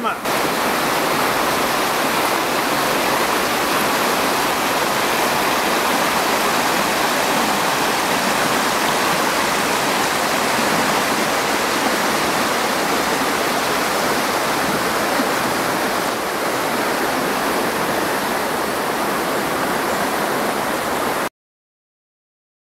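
River water rushing over shallow rapids, a steady, unbroken rush that cuts off suddenly about 21 seconds in.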